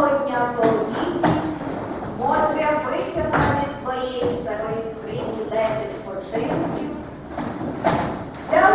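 People's voices speaking lines in a stage play, with a few dull thuds among them.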